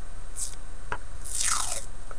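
Masking tape being picked at and peeled off its roll: a short crackle about half a second in, a small tick near the middle, then a longer ripping crackle that falls in pitch in the second half.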